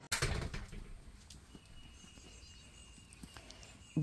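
A brief rustle at the very start, then quiet outdoor yard ambience. A faint, steady, high thin whistle runs for about two seconds in the middle, with a few faint ticks.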